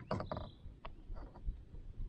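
A few short, light clicks and knocks from handling a northern pike laid along a measuring paddle in a plastic kayak, scattered irregularly through the moment.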